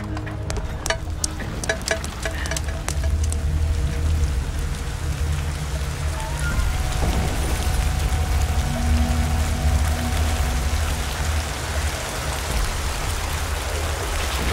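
Steady rain falling, building up after the first few seconds, over a low, droning film score. A run of sharp clicks comes in the first three seconds.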